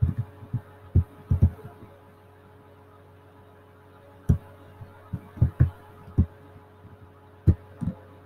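Dull taps and clicks of a computer keyboard and mouse being worked, about a dozen at irregular intervals. Several come in the first second and a half, then a pause, then more scattered ones, over a steady low electrical hum.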